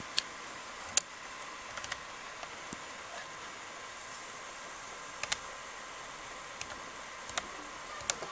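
A few sharp computer pointer-button clicks over a steady faint electronic hiss. The loudest click is about a second in, and there is a quick pair a little past the middle.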